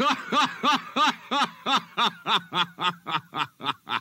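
A man laughing in a long, even run of short syllables, about four a second, that grow shorter and fainter toward the end.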